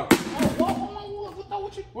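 A plastic canister drops and hits the concrete floor with one sharp crack, then a lighter knock about half a second later.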